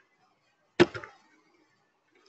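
A single sharp click about a second in, with a brief tail.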